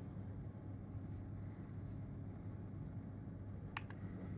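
Quiet room tone with a steady low electrical hum, and a single faint sharp click near the end.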